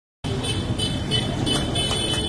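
Busy street ambience: road traffic running steadily, with music playing.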